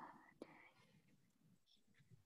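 Near silence over a video call, with a faint brief breathy noise and a soft click in the first half-second.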